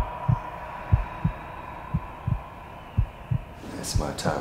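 Low double thumps in a slow heartbeat rhythm, about one pair a second, four pairs in all, over a steady hum. A short hiss comes just before the end.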